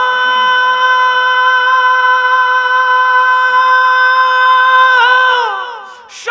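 A gazal singer holding one long, steady high note with no instruments alongside. The note dips slightly in pitch near the end and fades out just before six seconds.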